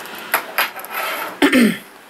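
A man clearing his throat, with a few small clicks, then a short spoken word near the end.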